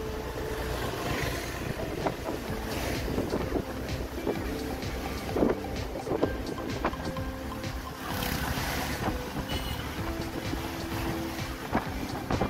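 Ride noise inside a moving vehicle on a wet road: a steady engine and tyre rumble with frequent small rattles. The hiss swells twice, about a second in and again near two-thirds of the way through, as traffic passes.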